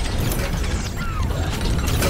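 Cinematic sound effects for an animated car intro: a steady low rumble under a run of quick mechanical clicks and knocks.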